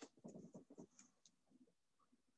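Near silence broken by a faint click, then about a second of soft, irregular rustling and light tapping close to a microphone, dying away after the first second and a half.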